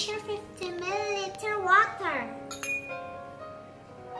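A child's voice speaking over soft background music, then a light clink of a glass beaker being handled a little past the middle, with held music notes carrying on to the end.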